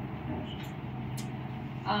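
Steady background noise of a room with a low hum and a few faint ticks; a woman's voice starts right at the end.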